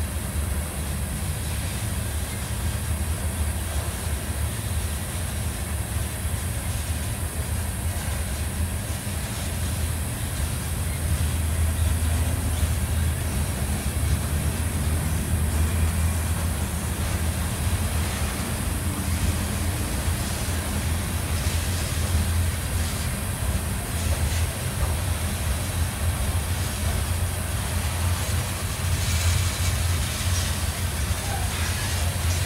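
Freight train of loaded open-top hopper cars rolling past close by: a steady low rumble of steel wheels on rail, growing a little louder about a third of the way in.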